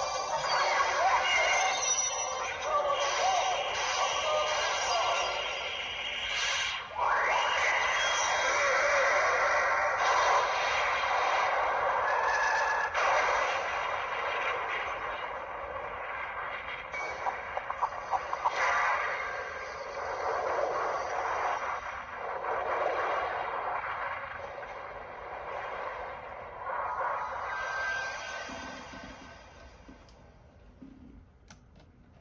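Bandai Ultra Replica Orb Ring toy playing a long music and sound-effect sequence through its small built-in speaker, thin and trebly with no bass, fading down near the end.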